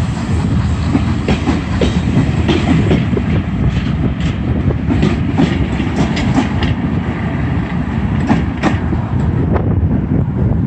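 Steam-hauled heritage passenger coaches rolling past close by, their wheels rumbling and clacking over the rail joints. The sharp clicks come thickest in the middle seconds, and the high clatter fades at the very end as the last coach draws away.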